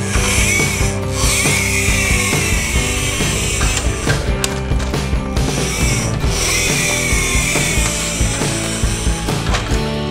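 Plastic toy vehicle's wheels and gear mechanism whirring as it is pushed along a hard surface, in two long runs, each with a whine that falls in pitch as it winds down. Background music plays underneath.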